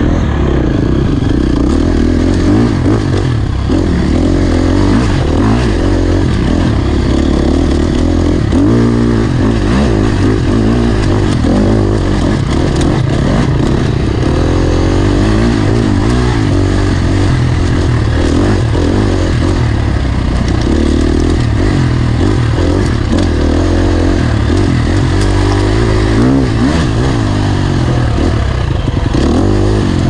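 Off-road dirt bike engine heard close up from the riding bike, running continuously while the throttle opens and closes, its pitch rising and falling several times over rough trail.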